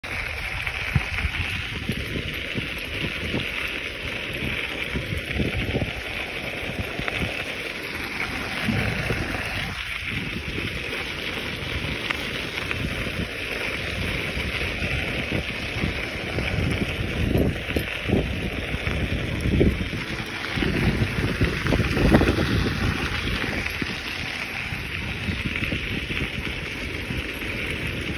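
Mountainboard wheels rolling over a gravel path, a steady rolling noise that swells and eases with the ride, with wind on the microphone.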